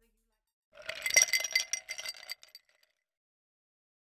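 Glass clinking: a quick run of bright clinks with ringing tones, starting just under a second in and lasting about two seconds.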